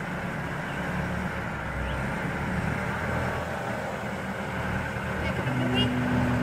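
Diesel engine of a Genie GTH telehandler running steadily while it lifts a load of logs; near the end its pitch rises and holds at a higher steady note.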